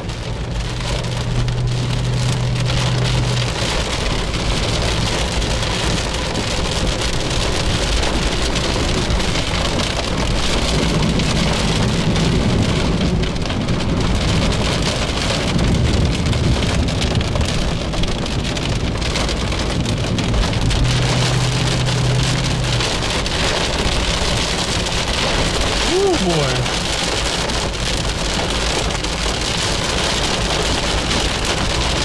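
Heavy rain pelting the car's windshield and roof, heard from inside the cabin as a dense, steady patter. A brief falling whine comes near the end.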